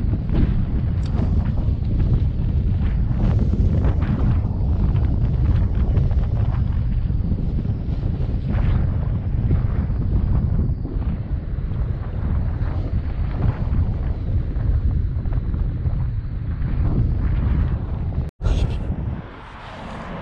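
Wind buffeting an action camera's microphone: a loud, gusty rumble. It cuts off abruptly near the end, leaving a much quieter stretch.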